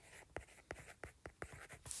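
A stylus writing a word on a tablet touchscreen: a series of faint clicks and light scratches as the letters are drawn.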